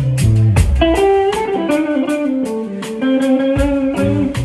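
Live blues band playing, with an electric guitar lead holding long notes over a steady drum beat. The bass drops out about a second in and comes back near the end.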